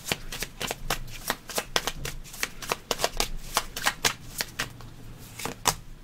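A tarot deck being shuffled by hand: a rapid, irregular run of crisp card clicks, several a second.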